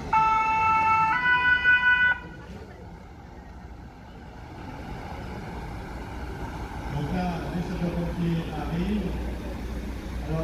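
French fire-service two-tone siren sounding one lower note, then one higher note, each about a second, then cutting off. Engine noise from the emergency vehicles driving past rises afterwards.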